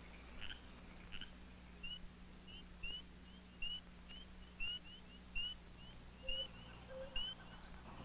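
Faint animal calls: short rising chirps repeated about twice a second, over a steady low hum.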